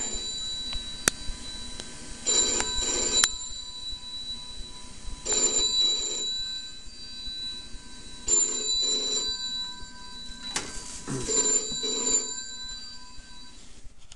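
Telephone ringing four times, each ring about a second long and about three seconds apart.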